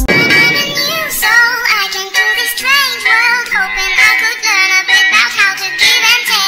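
Pop song with a high sung vocal line and little deep bass. It begins with an abrupt cut from a bass-heavy hip-hop track.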